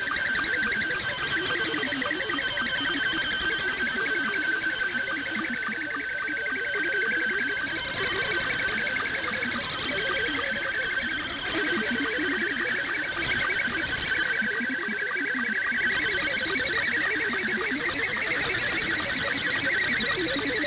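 Shortwave broadcast audio carrying two digital modes at once: an SSTV picture in Scottie 2 mode, heard as a steady high warbling scan tone around 1.5–2 kHz, and THOR22 data centred on 400 Hz, heard as a lower string of short hopping tones. Both sit in a haze of static hiss.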